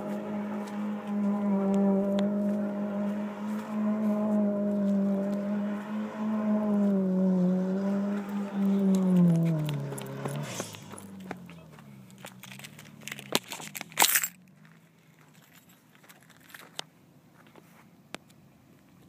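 Car engine held at high revs, its pitch wavering as the car spins on dirt. About ten seconds in the revs drop and the engine sound fades away, leaving faint crackles and one sharp loud burst of noise about fourteen seconds in.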